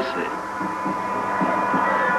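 A steady hum with a high, even tone, and a few faint short low blips in the second half.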